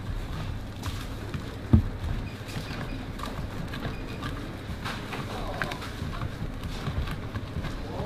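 Hands mixing a dry stuffing of breadcrumbs, chopped spinach and bacon in a tray: soft rustling with scattered light knocks, and one sharper knock about two seconds in, over a steady low background hum.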